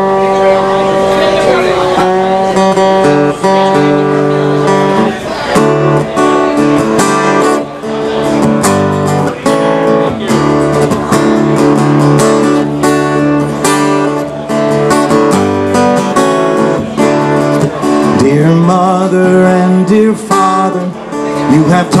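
Acoustic guitar playing a song's instrumental introduction, chords strummed and ringing steadily.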